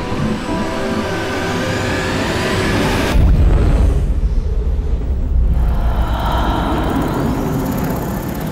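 Trailer score and sound design: a swelling drone with held tones, then, about three seconds in, a sudden deep bass boom that rumbles on for a couple of seconds before held tones return.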